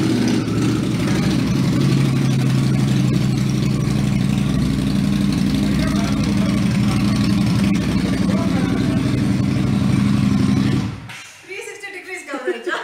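Cruiser motorcycle engine idling steadily with a loud, even low note, then switched off and cutting out suddenly about eleven seconds in.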